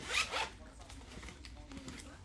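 A brief rasping scrape, two quick strokes in the first half-second, then low background noise.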